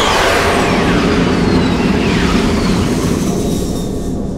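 Loud, deep roaring rumble from the sky with several whistling tones sliding downward in pitch, like a jet passing low overhead. It is a film sound effect for an unexplained sound in the sky, and it eases off slightly near the end.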